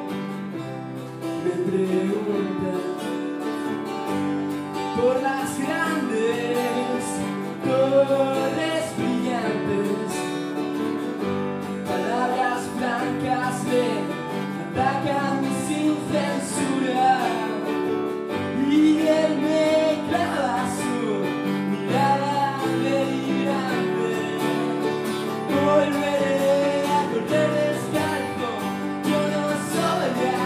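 Live acoustic guitar and keyboard playing a slow song together, with a voice singing over them.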